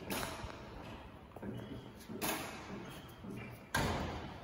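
Shoes scuffing and small wheels rolling on concrete as a Robinson R66 helicopter is pushed by hand on its ground-handling wheels. There are three short scrapes, the last near the end, with faint low voices in between.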